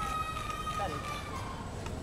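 A person's voice calling out in one long, high held note, with a short falling call near the middle, over steady low outdoor crowd and street noise.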